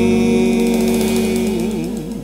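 The final held note of a jazz vocal song: a male singer sustains the last word over the band's held chord. It fades slowly, with a wavering vibrato coming in about a second and a half in.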